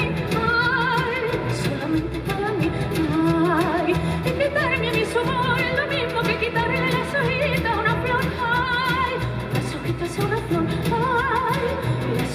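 Live zarzuela song: a woman sings with a wide, heavy vibrato over a low instrumental accompaniment that includes a double bass.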